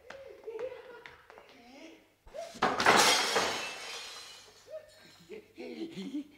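A sudden loud crash about two seconds in, dying away over a couple of seconds: a stage fall as a comic character stumbles. Quiet voices come before it, and talk with laughter follows near the end.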